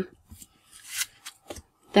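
A stack of paper stickers being flicked through by hand: a few soft rustles and brushes of paper sliding over paper, the loudest about a second in.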